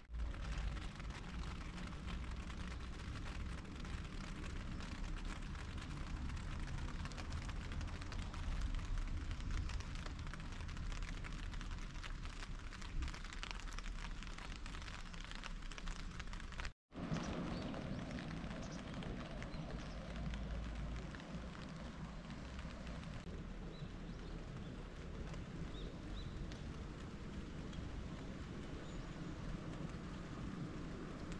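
Steady outdoor ambience: an even hiss of light rain on wet ground over a low wind rumble on the microphone. It is broken by a brief dropout about two-thirds through.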